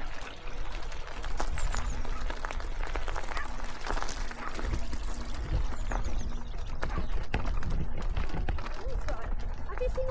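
Electric mountain bike clattering and rattling over a rough, rocky trail, a dense run of small knocks and clicks over a low rumble of wind on the microphone.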